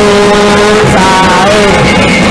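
Musik patrol ensemble playing a sholawat: a long held sung note that steps up in pitch about a second in, over dense, steady drum and bamboo-and-wood percussion.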